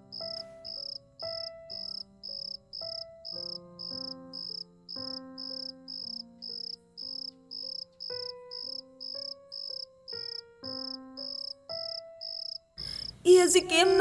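A cricket chirping steadily, about two high chirps a second, over soft background music of slow, held notes. A woman's voice starts loudly near the end.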